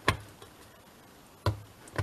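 Awl punching sewing holes through a folded paper signature: three sharp punches, each with a dull thump, one at the start and two close together near the end.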